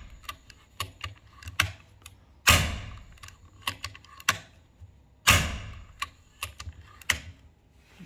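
Two shots from an FX Impact M3 PCP air rifle, about three seconds apart, each a sharp report with a short ringing tail. Lighter clicks of the action being worked come between the shots.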